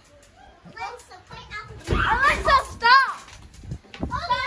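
Children's high-pitched voices talking and calling out while playing, with no clear words; the voices are loudest about two to three seconds in.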